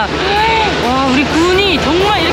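A woman's voice speaking, over a steady low hum.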